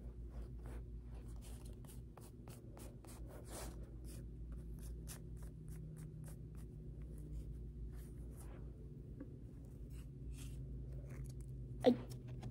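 Pokémon trading cards and their booster-pack wrappers being handled and leafed through by hand: a quick, irregular run of short scratchy rustles and light ticks, several a second, over a steady low hum.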